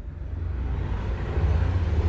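A steady low rumble of background noise, a little louder in the second half.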